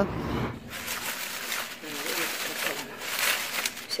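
Dried linden leaves and blossoms rustling and crackling as a hand handles them on a drying rack, with a faint voice murmuring.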